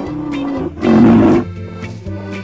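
Rhinoceros calling twice, low-pitched, the second call louder and about half a second long, over steady background music.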